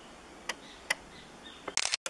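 Handheld digital camera clicking: two single clicks of buttons or handling, then near the end a short, dense clatter of the shutter as a still photo is taken, with the sound cutting out for an instant right after.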